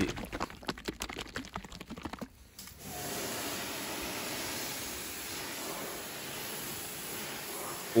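A plastic bottle of Meguiar's Wash Plus car shampoo shaken hard by hand, the liquid sloshing and the bottle clicking rapidly for about two seconds. About three seconds in it gives way to the steady hiss of a pressure washer's water spray rinsing a soapy car body.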